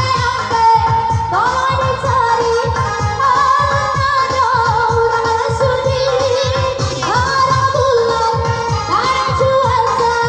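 Minang dendang singing through a microphone over amplified backing music with a steady beat. This is the tukang dendang's sung pantun, its melody sliding up and down.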